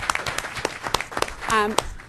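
A roomful of people clapping: scattered applause made of many separate claps.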